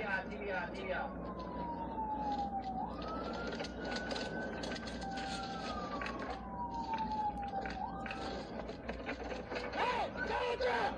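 Police car siren in wail mode: a single tone falling slowly in pitch, rising quickly, and falling slowly again, each cycle taking about five seconds, over the road and wind noise of a car at speed.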